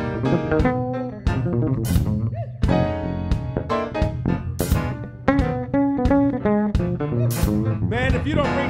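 Live jazz improvisation: an electric bass guitar plays pitched melodic lines with piano, punctuated by sharp hits about every two and a half seconds.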